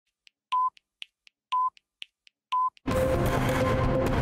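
Broadcast countdown time signal for the top of the hour: three short, high beeps one second apart, with faint ticking between them. Just before three seconds in, the news theme music starts abruptly.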